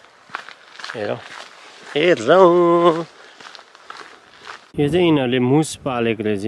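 A man talking while walking, with soft footsteps on a hiking trail in the gaps between his words.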